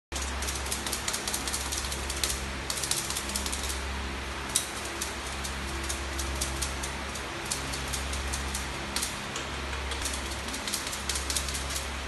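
Puppy claws clicking and scratching irregularly on a bare concrete floor, in quick clusters of ticks, over a steady low hum.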